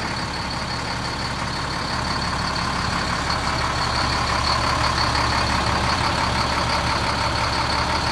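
Ford F650 dump truck's engine idling steadily with a thin, steady high whine over it, growing a little louder about two seconds in.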